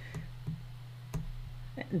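A few sharp computer mouse clicks, spaced irregularly over a low steady electrical hum.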